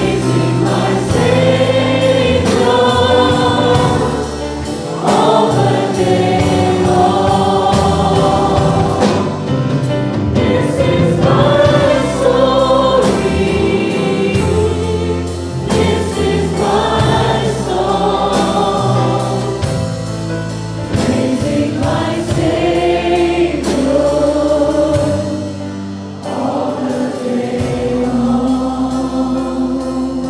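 Congregation singing a worship song together with a worship band: many voices in long sung phrases over a steady beat, fading near the end.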